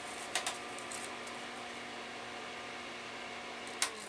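A heater running with a steady hum made up of several steady tones. It is switched off with a sharp click near the end, and the hum then dies away.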